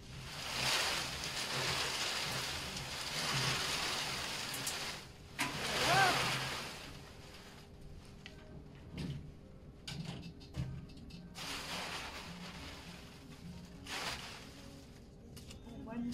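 Paper raffle tickets tumbling inside a hand-cranked perforated metal raffle drum as it is turned, a steady rushing for about the first seven seconds. After that, scattered clicks and short rustles as the drum is handled and its hatch opened.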